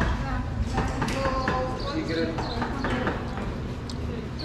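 Background conversation of several voices at an eating place, with a few sharp clicks scattered through it.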